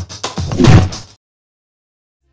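Electronic logo-sting music ending on a loud final hit with a swelling sweep, which cuts off abruptly just after a second in.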